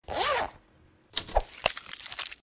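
Motion-graphics sound effects for an animated logo: a short whoosh with a curving, rising-then-falling tone, then, about a second in, a run of sharp clicks and crackle.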